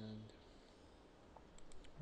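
Near-silent room tone, then a quick run of a few faint clicks from a computer mouse about a second and a half in.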